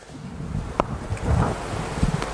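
Low, steady rumble of room noise, with one sharp click a little under halfway through.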